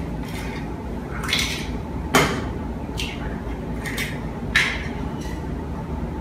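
Eggs being cracked on a glass bowl and the empty shells set into a second glass bowl: about six sharp taps and clinks of shell on glass, the loudest a little over two seconds in.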